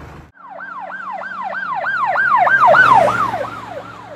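Emergency vehicle siren wailing in quick rising-and-falling sweeps, about three a second. It starts suddenly, swells louder, then fades as it passes.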